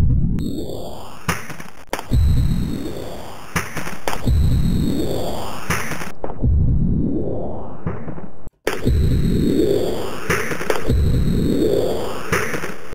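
Sampled clatter of a Traktor Audio 10 audio interface dropping on the floor, retriggered in a software sampler about every two seconds and heavily bit-crushed and sample-rate reduced, so each hit becomes a distorted digital smear that rises in pitch. Near the end it also runs through a vowel-type filter.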